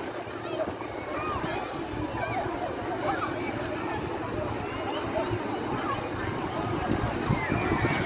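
Several distant voices of children and adults calling and shouting as they play in shallow sea water, over a steady wash of surf.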